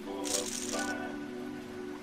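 Online poker client's chip sound effect: a short rattle of clattering chips, lasting under a second shortly after the start, as the pot is awarded to the winner. Steady background music runs underneath.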